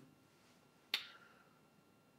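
A single sharp click about a second in, dying away quickly against near silence.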